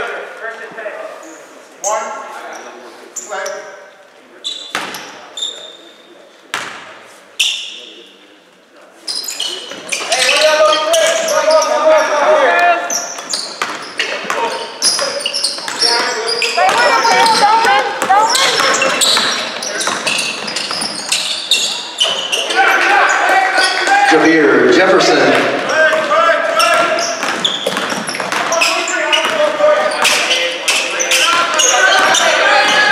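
Basketball bounced on a hardwood gym floor about six times, each bounce ringing in the large hall. From about ten seconds in, loud voices fill the gym, with the ball dribbled through them.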